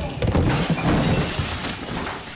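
Commotion as a man collapses behind a lectern and others rush to catch him: knocks and thuds, then from about half a second in a loud, bright crashing noise.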